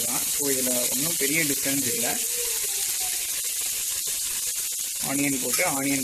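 Sliced onions frying in oil in an aluminium pressure cooker: a steady sizzling hiss that is heard on its own between the speech.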